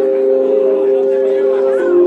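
Music from a hip-hop beat played over the venue's sound system: a held chord of several sustained tones, no drums, that moves to a new chord near the end.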